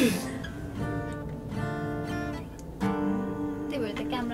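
Acoustic guitar strumming chords, each struck chord left to ring before the next.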